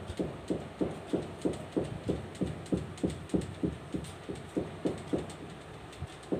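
A steady, even rhythm of short low pulses, about three a second, each sliding down in pitch.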